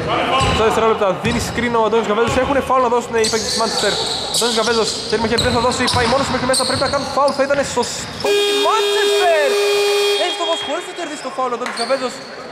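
Basketball scoreboard horn sounds one steady tone for about two and a half seconds, a little past the middle, marking the end of the first half. Before it, a ball bounces on the hardwood court among voices.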